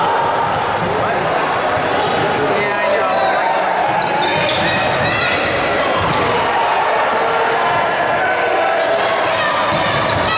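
Volleyball being struck during a rally, with the constant chatter and calls of players and spectators echoing in a large gymnasium hall.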